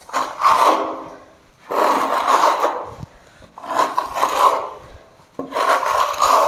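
Steel Swiss trowel scraping across wet gypsum plaster on a wall in four long strokes, about one every two seconds.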